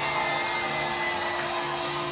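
A live band playing through a club sound system, with long held notes ringing over the dense mix of the band.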